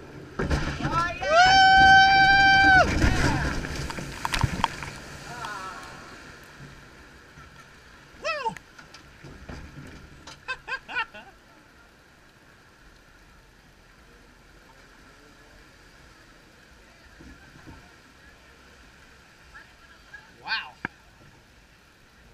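Log flume boat plunging down the drop: rushing water and a long, held scream, then a heavy splash at the bottom that dies away over a few seconds. Afterwards the boat drifts down the water channel with quiet sloshing and a few short shouts.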